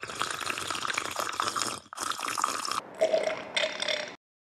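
Loud slurping from a mug: one long slurp, a brief break about two seconds in, then a second slurp followed by shorter slurps and swallows near the end.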